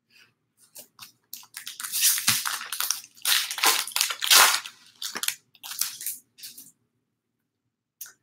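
A 2019 Topps Stadium Club baseball card pack being torn open by hand, its wrapper crinkling and crackling in an irregular run of rustles for about six seconds.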